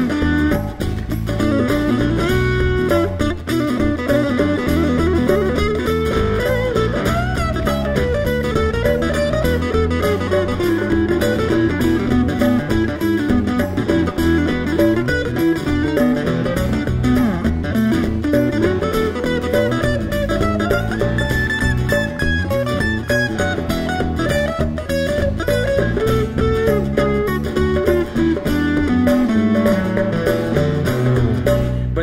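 Live acoustic band playing: acoustic guitar picked over an electric bass guitar, the music running steadily.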